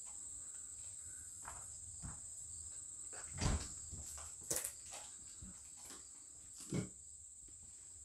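Crickets chirring steadily at a high pitch, with a few scattered knocks and thumps; the loudest thump comes about three and a half seconds in.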